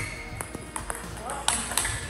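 Table tennis rally: the celluloid-type plastic ball clicking sharply off bats and table every few tenths of a second, with a rubber shoe squeaking on the hall floor.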